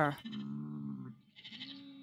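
Sheep bleating softly: one drawn-out bleat lasting about a second, then a fainter, higher call near the end.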